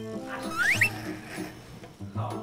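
Light background music with a short rising cartoon sound effect, like a whistle sliding up in pitch, just under a second in.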